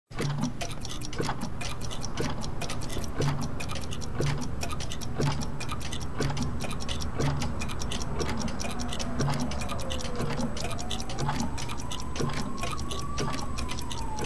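Many clocks ticking out of step with each other, with a soft low thump about once a second underneath. From about eight seconds in, a thin tone glides down, rises again, then starts falling near the end.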